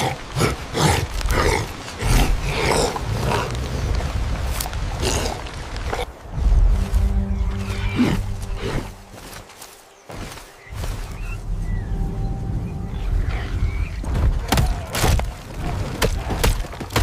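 Cinematic film soundtrack: music mixed with animal-like roars and cries in the first several seconds, then a low, steady held drone from about six seconds in, dipping briefly near ten seconds.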